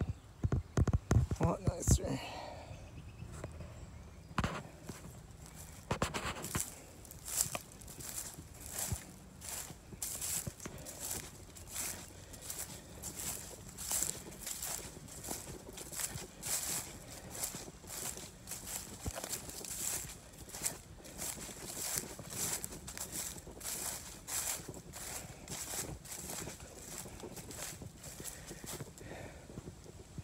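Footsteps in dry leaf litter at a steady walking pace, about two steps a second. Low rumbling thumps on the microphone in the first two seconds.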